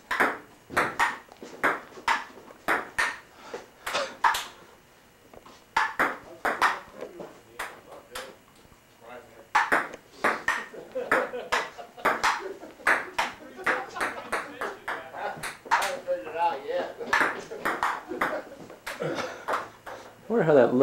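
Table-tennis rally: a ping-pong ball clicking sharply off the paddles and the table about three times a second, in runs of play broken by two short pauses, with a few voices between the shots.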